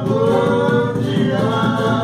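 Singing voices with a hand-played conga drum beating along.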